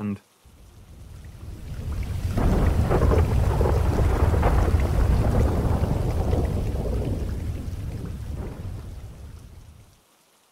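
A long roll of thunder over rain, swelling over the first few seconds and slowly dying away near the end.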